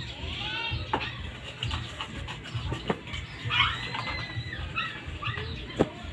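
Chickens calling: a few short, high calls in the first second and a longer held call about halfway through. A few sharp clicks, the loudest near the end.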